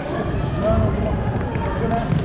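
A group of young children running on a hardwood gym floor, a dense patter of footsteps, with children's voices calling out over it.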